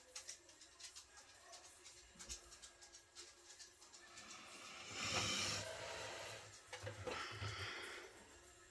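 Hands handling small plastic acrylic paint bottles and a painted figurine on a table: light clicks and taps, then a brief rustling noise about five seconds in and another about seven seconds in.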